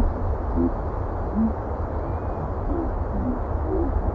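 Steady roar of a jet airliner's engines at takeoff power, with a deep rumble underneath and a few faint, short low tones over it.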